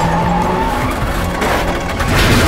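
A car skidding with its tyres squealing, the squeal held for under a second at the start, over engine and road noise.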